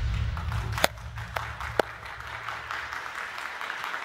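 Audience applauding while deep bass music fades out, with a few sharp claps standing out in the first two seconds.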